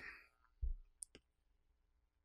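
Quiet pause in close-miked speech: a soft low thump just after half a second in, then two faint short clicks about a second in.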